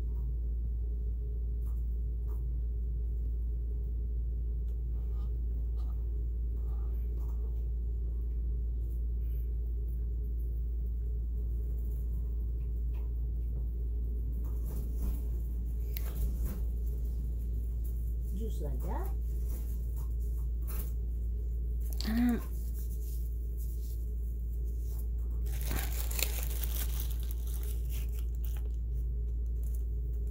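Steady low hum under faint, scattered clicks and rustles of hands working cotton and grease among the internal parts of a Janome MC10000 sewing machine, with a short burst of rustling near the end. Two brief low pitched sounds come past the middle.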